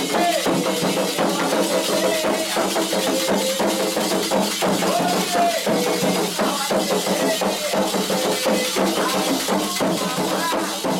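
Candomblé ceremonial music for Oxum: a fast, steady rhythm on atabaque drums and percussion, with voices singing a chant over it.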